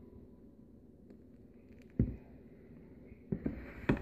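Quiet pouring of thick soup from a Vitamix blender jar into a bowl, with a sharp knock of the jar about halfway through and two more knocks near the end.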